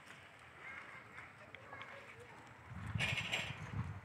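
Indistinct human voices outdoors, faint at first, then louder for the last second.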